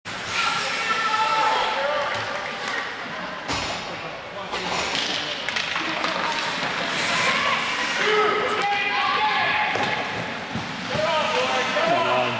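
Ice hockey play: indistinct voices calling out across the rink, mixed with sharp knocks of sticks and puck on the ice, a cluster of them a few seconds in.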